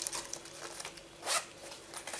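Small zipper on a fabric pouch pulled shut in one quick stroke about a second in, with light handling of the fabric around it.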